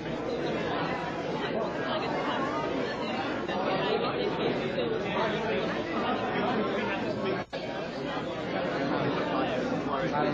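Crowd chatter: many people talking at once, with no single voice standing out. The sound briefly drops out about seven and a half seconds in.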